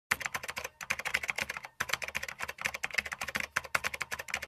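Keyboard typing sound effect for text typed out letter by letter on screen: a fast run of key clicks, broken by two short pauses about one and two seconds in.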